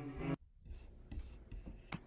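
A recorded cello note from the shared video breaks off abruptly about a third of a second in as playback is paused. Then only faint rustling and small clicks, with one sharper click near the end.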